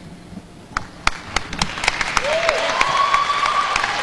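Audience applause: a few scattered claps about a second in that quickly build into a steady round of clapping, with voices calling out from the crowd in the second half.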